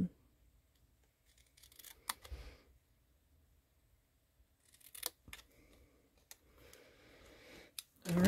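Small scissors snipping white cardstock, a few short crisp cuts, around two seconds in and again about five seconds in, notching a banner tail into the end of a paper strip. Faint paper rustling follows near the end.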